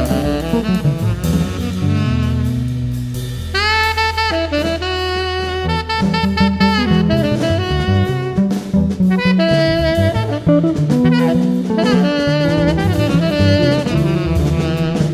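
Live small-group jazz: a saxophone plays a melodic line with several long held notes, over bass and a drum kit.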